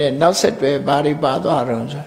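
Speech only: a man talking in Burmese, with some drawn-out, level-pitched syllables.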